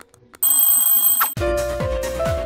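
A bright, high ringing notification-bell sound effect lasting about a second, then electronic music with a steady kick-drum beat starting.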